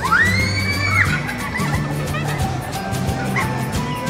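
Music with a steady beat, with a child's long scream in the first second that rises in pitch and holds before breaking off, and a few shorter squeals afterwards.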